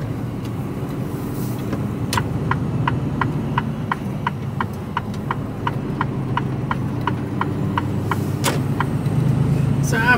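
Inside a lorry cab, the diesel engine runs steadily. From about two seconds in, the turn-indicator relay ticks evenly at about three ticks a second, as the truck leaves the roundabout, and the ticking stops a couple of seconds before the end with one sharper click.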